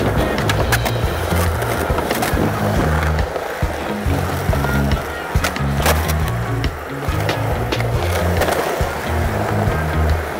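Skateboard wheels rolling on smooth concrete, with repeated clacks of the board popping and landing; the sharpest clack comes about six seconds in. Music with a steady bass line plays under it throughout.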